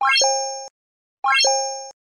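Like-and-subscribe animation sound effect played twice, about 1.2 s apart: each time a quick rising run of electronic blips ending in a bright ringing chime that fades for about half a second and then cuts off.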